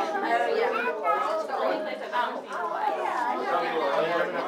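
Background chatter: several people talking at once, no one voice clear.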